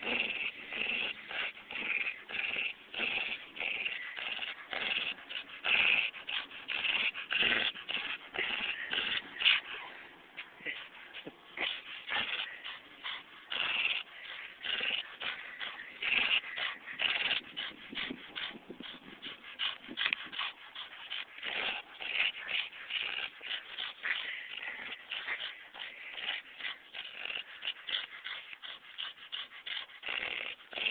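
Australian Shepherd play-growling and snarling through a rope toy during a tug-of-war, in a rapid, unbroken run of short rough noises.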